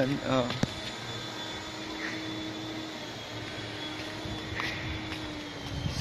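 A steady mechanical drone holding one low pitch, like a distant motor or machine running.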